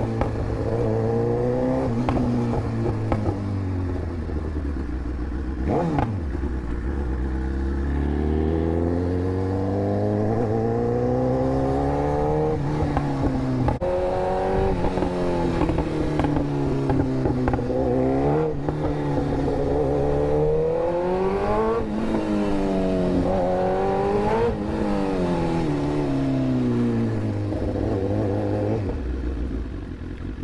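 Superbike's inline-four engine under way, its revs climbing and dropping again and again as the rider accelerates, changes gear and rolls off the throttle. A couple of quick sharp rev peaks come late on, and the engine settles to a lower, steadier note near the end.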